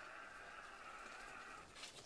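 Faint steady whine of a remote-controlled camera rover's electric drive motors, cutting off near the end.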